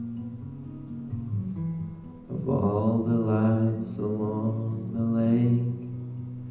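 Acoustic guitar playing, with a man's voice singing two long, wavering notes from a little past two seconds in until near the end.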